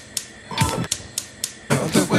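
Background music starting up: a few sharp clicks and deep beats, filling out into a fuller tune near the end.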